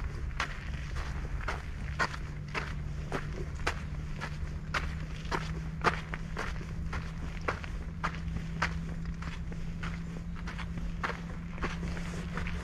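Footsteps of a person walking steadily along a dirt path, about two steps a second. A steady low hum runs underneath.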